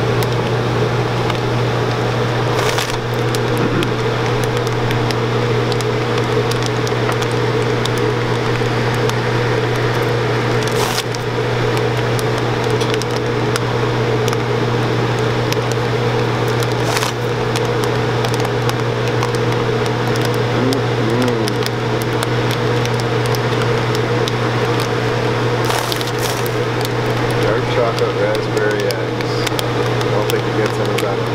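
Chocolate enrobing machine running steadily: a constant low hum from its motor, pump and belts, with the rush of the air blower that blows excess chocolate off the coated eggs. A few brief clicks sound over it.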